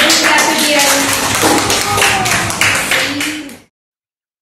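Applause: a run of hand claps with voices over it, cut off suddenly near the end.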